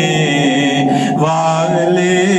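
A man singing an Urdu naat, a devotional song in praise of the Prophet, drawing out long held notes that step to a new pitch about a second in.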